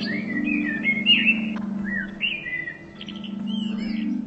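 Birds singing short whistled notes that glide up and down, a quick run of them in the first half and a few more near the end, over a steady low droning note of meditation music.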